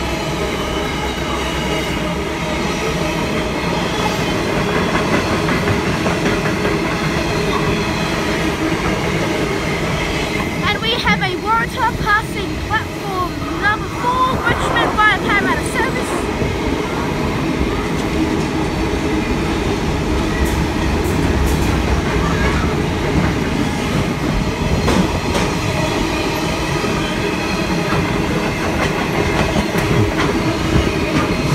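Freight train wagons rolling past at speed: a steady rumble with the clatter of wheels over rail joints, and a run of short high-pitched metallic squeals between about eleven and sixteen seconds in.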